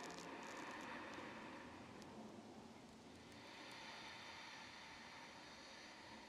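Near silence: faint room hiss that swells softly and slowly a couple of times.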